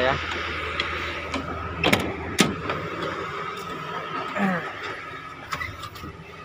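Excavator cab door being opened and climbed through: two sharp metallic clacks about two seconds in, over a steady low hum that fades after about four seconds.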